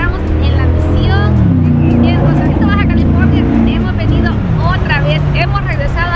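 A motor vehicle's engine running, a low drone that drops in pitch a couple of times, with people's voices over it.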